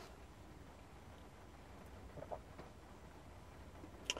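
Near silence: quiet room tone inside a parked car cabin with the engine off, broken by a couple of faint soft ticks a little over two seconds in.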